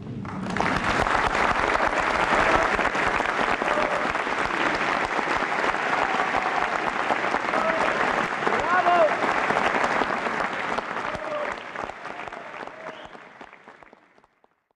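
Audience applauding after a song, with a few voices calling out partway through; the applause fades away near the end.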